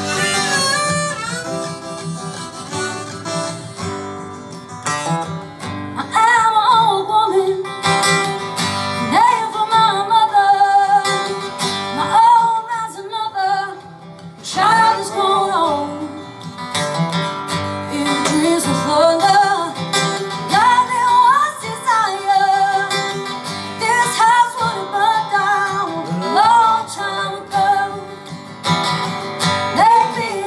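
Acoustic guitar playing a song, with a singing voice coming in about six seconds in and carrying the melody over it.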